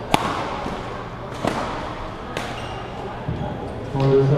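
Badminton racket strikes on a shuttlecock during a rally: a sharp crack from an overhead smash just after the start, then lighter hits about once a second.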